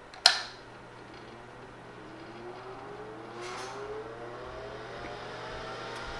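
HP 9825 desktop computer being switched on for a test after a chip replacement: a sharp click of the power switch, then its cooling fan spinning up with a rising whine over a steady low hum.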